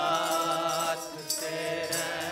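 Sikh Gurbani kirtan: a sung note held steady by voices over a sustained harmonium.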